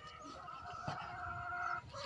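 A single long animal call, held at a steady pitch for about a second and a half and fading out near the end.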